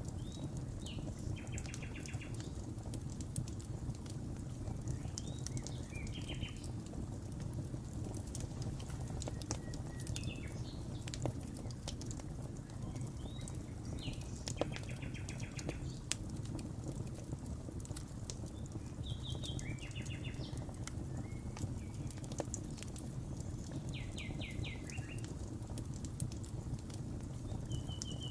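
Fire-pit fire crackling over a steady low rumble, with scattered sharp pops. A songbird calls a short phrase of quick repeated notes about every four to five seconds.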